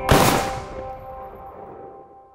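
Intro/outro logo sting: a held, chord-like tone, then a single sharp, loud, gunshot-like hit just after it begins, ringing and slowly fading away.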